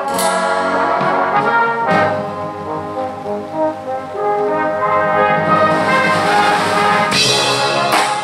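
Brass band playing sustained full chords, with sharp percussion accents about two seconds in and again near the end; the music eases softer in the middle and swells back up.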